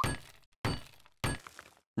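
Cartoon sound effect of a hammer striking and smashing three times, about two-thirds of a second apart, each hit a sudden crash that fades away.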